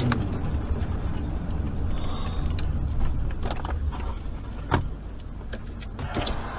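Low road and engine rumble inside a car as it slows down, with a few light clicks and one sharper knock about three-quarters of the way through.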